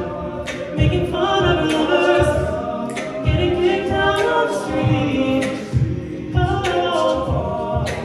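Male a cappella group singing live, several voices in chords under a lead singer, with a steady beat of vocal percussion, about two hits a second.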